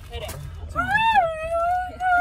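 A high-pitched human voice wailing or singing long, drawn-out notes that swoop up and then hold, over the low rumble of a pickup truck's cab.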